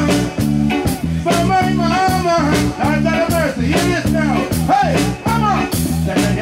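A live reggae band playing, with a steady bass-and-drum groove and a gliding lead melody line over it.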